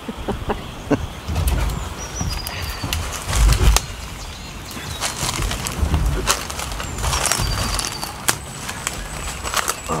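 Branches and dry twigs crackling, snapping and rustling as people push on foot through dense jungle scrub, in irregular clicks and snaps, with low rumbling bumps of handling noise. A few short, high bird chirps sound over it.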